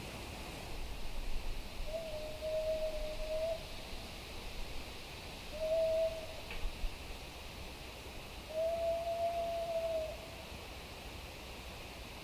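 Three drawn-out calls held on one steady mid-range note: the first about a second and a half long, a short one a few seconds later, and a last one nearly two seconds long. A faint steady hiss lies underneath. The uploader presents such calls as a Bigfoot vocal.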